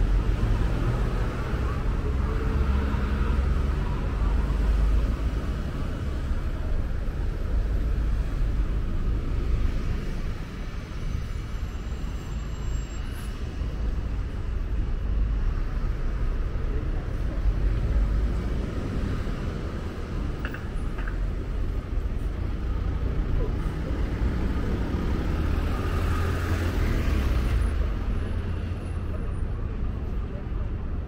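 City street traffic: vehicles passing with a steady low rumble that swells as they go by, a few seconds in and again near the end.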